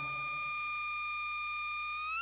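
A steady, high electronic tone with overtones, held at one unchanging pitch.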